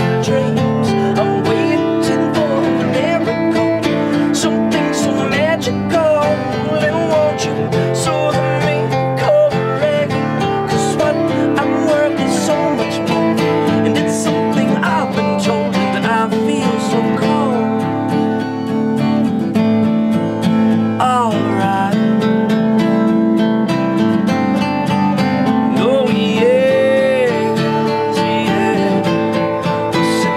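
A band playing live, led by strummed acoustic guitar, at a steady, full level, with a few notes that bend in pitch.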